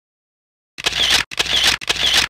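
A camera shutter firing repeatedly, about twice a second, in identical evenly spaced shots. The shots start about three quarters of a second in, after silence.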